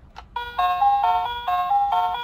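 Children's educational toy laptop ('Expert' learning computer) playing its electronic start-up tune through its small built-in speaker as it is switched on: a click, then a quick melody of beeping notes, several a second.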